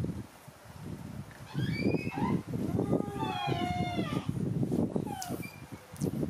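Baby macaques giving high-pitched squealing calls: a few short ones about a second and a half in, a longer wavering one around three seconds, and a short falling one near the end. Scuffling and bumps from the monkeys moving about run under the calls.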